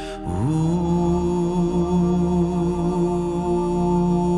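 Worship music with a singing voice: just after the start a breath, then the voice slides up into one long held, wordless note over soft sustained keyboard accompaniment.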